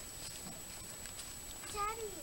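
A single short, high-pitched vocal call near the end, its pitch rising and then falling, over a faint steady background.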